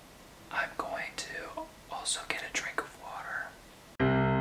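A man whispering, several short phrases with brief pauses between them.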